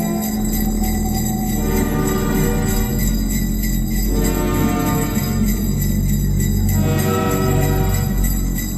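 Experimental electronic music, a collage of chopped vinyl samples: a dense layered texture whose chords shift about every second and a half, over a fast ticking pulse in the highs.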